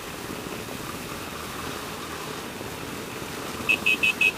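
Yamaha Ténéré 250 single-cylinder engine running steadily at low speed while filtering through stopped traffic. Near the end come a couple of quick, short, high-pitched electronic beeps.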